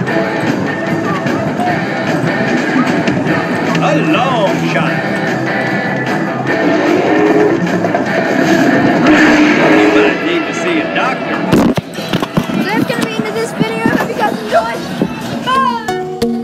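Busy arcade din: overlapping game-machine music and jingles with people talking. About three-quarters through it changes to sparser music with sharp clicks and short rising chirps.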